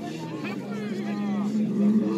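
Men's voices calling out over a steady low hum like an idling engine. No clash of horns stands out.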